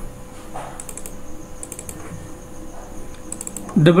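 Computer mouse buttons clicking in a few quick pairs: double clicks adding new nodes to a curve in drawing software, over a faint steady hum.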